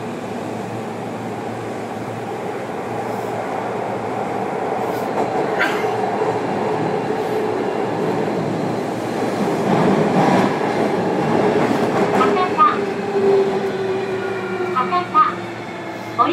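Running sound inside a JR Kyushu 305-series EMU motor car: wheel and motor rumble under a VVVF inverter tone that slowly falls in pitch over the second half as the train slows, with a few clatters about ten seconds in.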